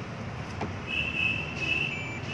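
High, steady electronic beep from a handheld coating thickness gauge (Metravi CTG-01), starting about a second in and lasting about a second, signalling that a paint-thickness reading has been taken on a car door panel.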